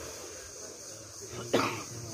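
A person coughing close to the microphone: one sharp, loud cough about one and a half seconds in, over a steady faint high-pitched hiss.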